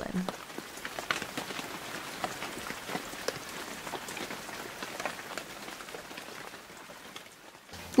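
Rain pattering on a window: a steady soft hiss dotted with scattered drop ticks, fading away just before the end.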